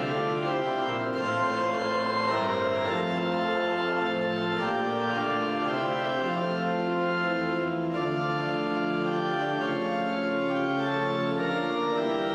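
Organ playing a slow piece of steady held chords, the notes changing about once a second.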